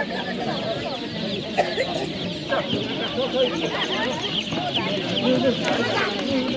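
Many young chicks peeping together, a dense chorus of short, high, falling cheeps that thickens from about halfway through, with people talking underneath.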